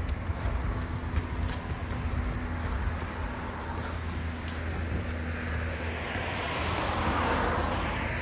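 Road traffic on a residential street: a steady low engine hum, and a passing car whose noise swells and fades near the end.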